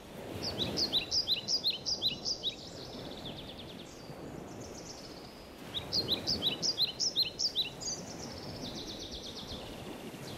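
A songbird singing two phrases, each a run of quick, high chirps ending in a short trill, over a steady low background rumble.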